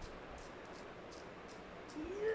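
Faint scraping of a pencil being twisted in a small plastic handheld sharpener, a soft shaving rasp several times over as the blade cuts the wood.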